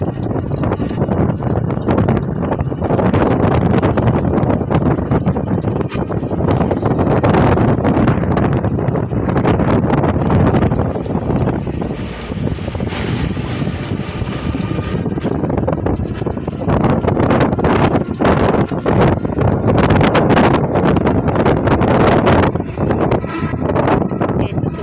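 Wind buffeting and crackling on the microphone over the steady noise of a vehicle in motion, heard from the seat of an open-sided canopied tricycle. The noise eases briefly about halfway through, then picks up again.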